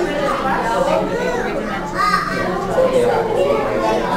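Overlapping chatter of many adults and children talking at once in a large room, with no single voice standing out.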